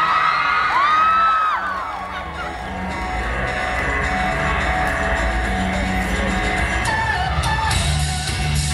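Audience whooping and cheering for the first second or so, then music with a heavy bass line playing over the hall's sound system for the rest.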